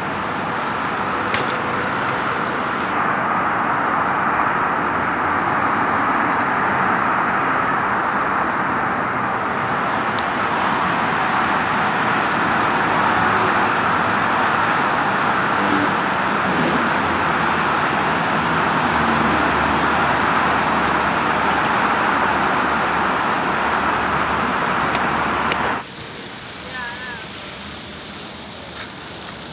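Steady city traffic noise from a street of passing cars, which cuts off suddenly near the end, giving way to a quieter background.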